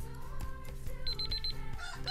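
Countdown timer alarm going off about a second in: a quick run of rapid high-pitched beeps signalling that the minute is up, over background music.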